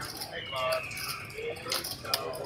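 Casino table background: faint voices and short chirping electronic-sounding tones, with a couple of sharp clicks near the end.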